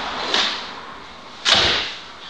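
A karate practitioner's technique: a light snap early on, then a louder sudden snap with a low thud about a second and a half in, the cloth of his gi cracking and his foot striking the floor as he moves into the next stance.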